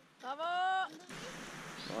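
A person's cheering shout, rising in pitch and then held for about half a second, right after a "woo!" of celebration. About a second in the sound cuts to a steady, quieter hiss.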